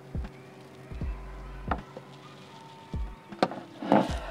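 A cigarette being lit with a lighter and drawn on hard: three short, low, breathy puffs and a few sharp clicks, over faint background music with steady held notes.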